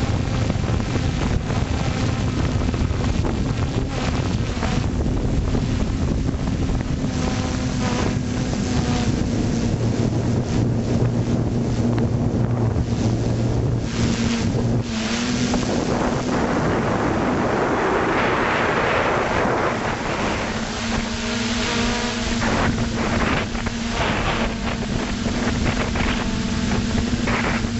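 A multirotor FPV drone's electric motors and propellers humming steadily, heard through the onboard camera's microphone, with wind rushing over the microphone. The hum shifts slightly in pitch along the way, and the wind noise swells for a few seconds past the middle.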